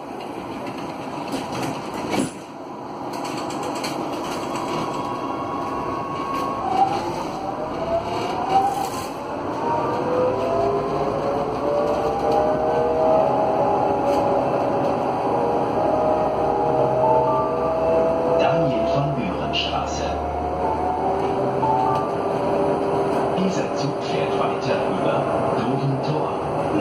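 GT8N tram with its original GTO traction inverter, heard from inside the car as it pulls away: the inverter whines in several tones that rise in pitch together as the tram accelerates, then settles to a steadier tone, over the running noise of the car. A few sharp clicks come near the start and again after about seven seconds.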